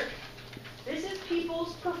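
Speech only: a lecturer talking, with a short lull in the first second before the voice resumes.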